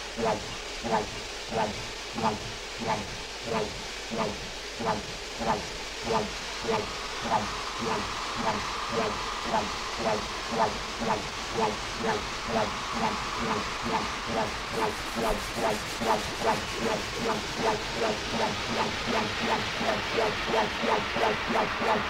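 Breakdown in a bassline house / speed garage mix: a single pitched synth note pulsing about one and a half times a second, the pulses coming faster in the second half as a hiss riser swells. Faint high ticks join about two thirds of the way through, building back toward the full beat.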